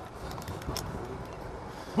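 Steady outdoor background noise, with a few faint clicks as the metal hardware on a climbing harness and rappel device is handled.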